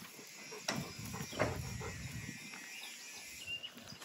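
Faint sounds from small goats: a few short, soft noises about a second in, over a quiet background.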